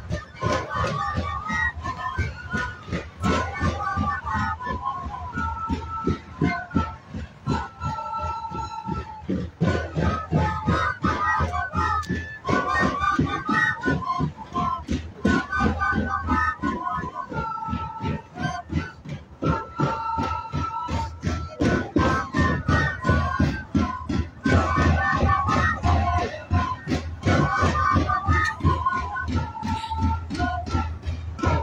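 A live Andean folk band playing: several wind instruments carry a stepped, repeating melody in parallel lines over steady bass drum beats.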